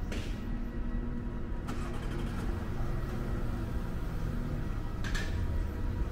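Car engine running close by, a steady low rumble, with a few brief rushes of noise.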